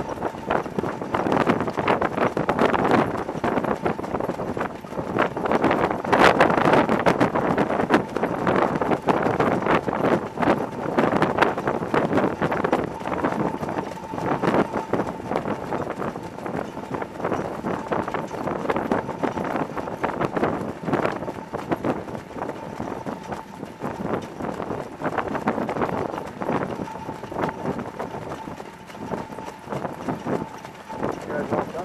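Hooves of several harness horses trotting close by on a dirt track, a dense irregular clatter over a steady rush of wind and sulky wheels, loudest about six seconds in. A faint steady whine comes in around the middle and again near the end.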